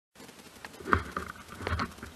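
Handling noise on a phone microphone as the phone is swung round: several soft knocks and rubbing, the loudest about a second in.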